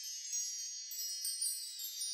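Faint, high-pitched chime sound effect ringing out: a cluster of shimmering metallic tones fading slowly, with a few light tinkles.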